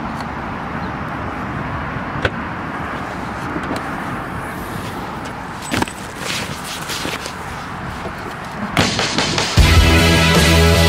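Steady outdoor background noise with a few scattered knocks and thuds as bags are packed into a car trunk. Loud music comes in near the end.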